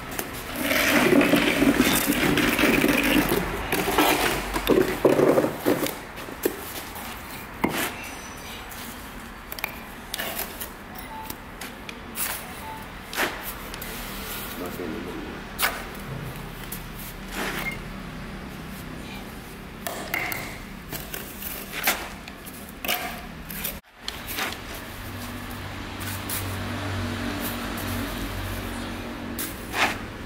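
Steel bricklaying trowel working cement mortar: short scrapes and sharp clicks and knocks as it scoops mortar from a plastic pan and taps bricks down into the mortar bed, at an irregular pace. A steady low hum comes in for the last several seconds.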